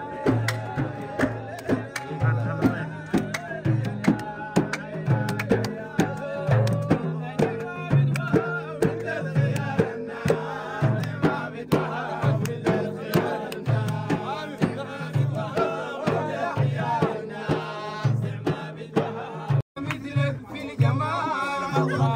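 Sudanese madih, praise songs for the Prophet: men singing to large hand-beaten frame drums that keep a steady beat. The sound cuts out for an instant near the end.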